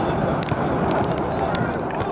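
Faint, distant voices of players and sideline spectators calling out on an outdoor soccer field, over a steady low outdoor rumble on the microphone.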